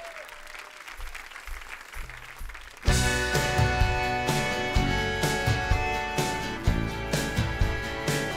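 Audience applause dying down, then about three seconds in the full band comes in all at once: drums, accordion, guitars and bass playing a driving rhythm.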